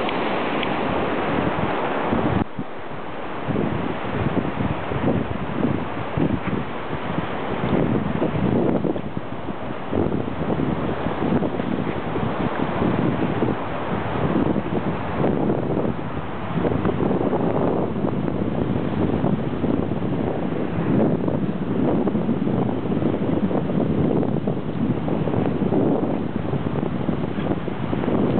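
Wind blowing across the microphone in uneven gusts, with ocean surf washing in the background; the noise briefly drops about two seconds in.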